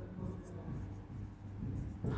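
Marker pen writing on a whiteboard: faint, short strokes against a low steady room hum.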